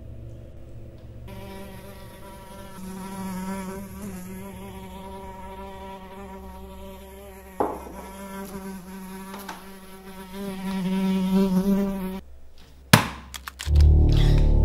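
A housefly buzzing, its pitch wavering slightly, growing louder for a couple of seconds near the end and then stopping suddenly. About a second later comes a single sharp smack, followed by a few small ticks.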